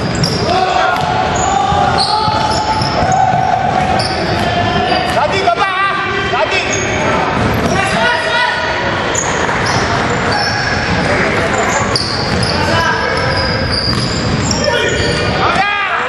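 Basketball game in a large, echoing gym: the ball bounces, sneakers squeak in short high chirps on the court, and players and spectators call out.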